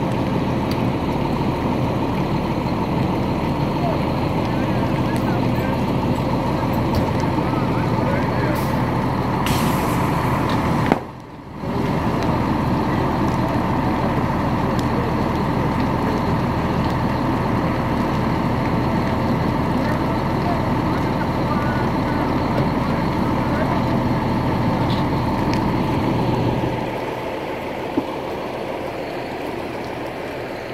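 Fire engine's diesel engine running steadily, a loud drone with a constant hum. The sound cuts out briefly a little over a third of the way in, and it grows quieter near the end.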